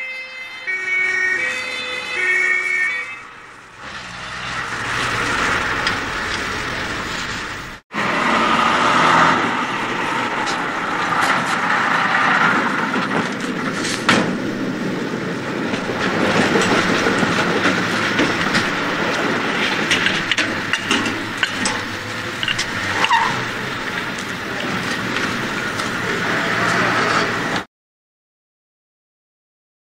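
Two-tone siren of a Star 244 fire engine alternating between two notes as the truck passes, fading away over the first few seconds. After a cut, a long stretch of steady broad noise with scattered knocks follows.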